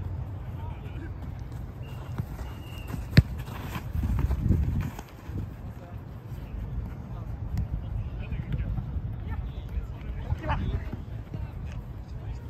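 A football kicked hard once about three seconds in, a single sharp thud, against the pitch's background of players' footsteps and distant calling voices.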